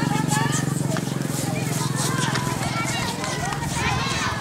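Many children's voices chattering and calling out over one another while they play on a lawn, with a steady low hum underneath that eases off about three seconds in.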